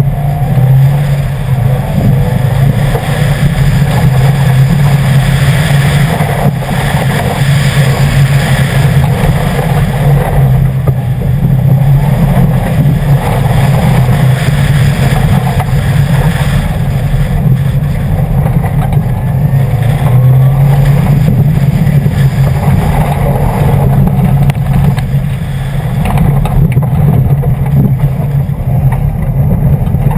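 A 2011 Subaru WRX's turbocharged flat-four engine running steadily and loudly as the car drives a dirt and gravel rally course, with road noise from the loose surface under the tyres.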